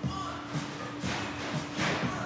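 Light handling sounds as a small brass rod and cap are set into a soldering fixture, with a louder rustle near the end, over a steady hum.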